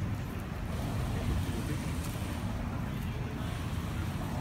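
Steady outdoor ballpark ambience between pitches: a low, even rumble with faint crowd murmur and no distinct strike.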